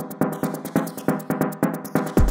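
Electronic dance track in a breakdown: the kick drum and bass are dropped out, leaving an even, fast rhythmic pattern of synth and percussion hits.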